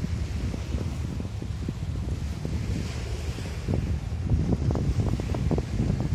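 Wind buffeting the microphone in uneven gusts, stronger in the second half, over the wash of small waves on a shingle shore.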